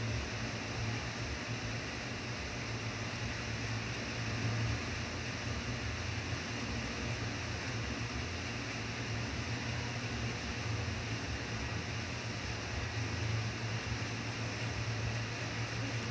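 Steady low hum with an even hiss of room tone, with no distinct events.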